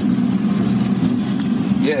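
Steady low drone of a car in motion, engine and road noise heard from inside the cabin.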